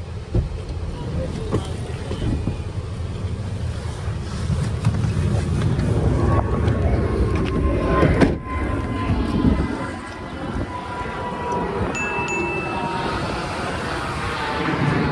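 Wind buffeting the microphone while walking beside street traffic, and from about halfway through an ice cream truck's chiming jingle playing.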